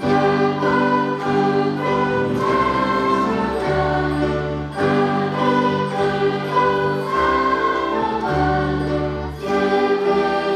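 A school ensemble of many flutes with a brass instrument, an electric keyboard and a cello plays a Christmas piece in long, sustained phrases. There are short breaks between phrases at the start, about five seconds in, and near the end.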